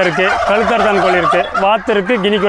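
A flock of domestic turkeys gobbling and calling, many birds at once, with a man's voice among them.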